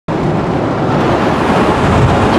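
Steady road and wind noise inside a moving car's cabin.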